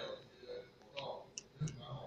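A child's voice speaking Mandarin stops and pauses. A few short, sharp clicks fall in the pause, and the voice makes a brief sound again near the end.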